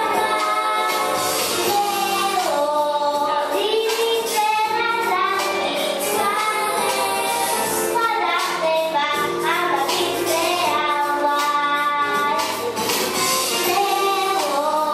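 A young girl singing a melodic song solo over backing music with a steady beat.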